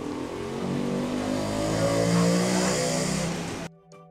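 A motor vehicle engine running, its pitch slowly rising, then cutting off suddenly near the end.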